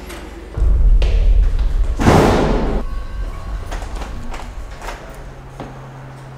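A sudden deep rumbling thud about half a second in that carries on for a couple of seconds, with a short burst of rushing noise about two seconds in, then quieter knocks and movement sounds.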